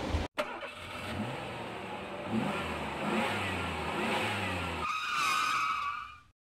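A motor vehicle engine accelerating, its pitch rising again and again as it pulls away. Near the end it gives way to a bright, held, horn-like tone.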